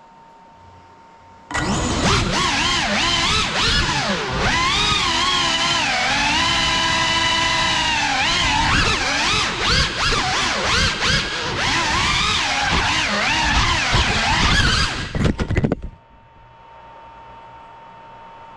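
Cinewhoop quadcopter's motors and ducted propellers, recorded on the craft, whining in pitch that rises and falls with the throttle from the moment it lifts off. Near the end the whine breaks into a stuttering run of chops as the quad crashes, then cuts out.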